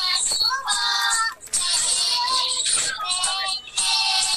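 Children singing with music, a high-voiced song that runs on with only brief breaks.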